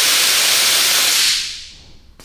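Nitrous oxide purge: a sudden loud hiss of gas blasting out in a white cloud, holding steady for about a second and a half, then tapering off.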